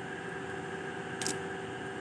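Steady low hiss with a faint hum, with a brief high hiss about a second in; no distinct event.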